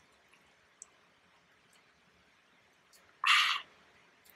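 A person drinking quietly from a metal mug: near silence with a faint click about a second in, then one short, loud breath of air just after three seconds in.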